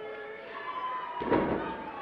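A wrestler body-slammed onto the ring mat: one heavy thud about a second in, over the murmur of the crowd.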